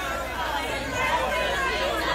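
Crowd of people talking over one another, a blur of overlapping voices with no single clear speaker.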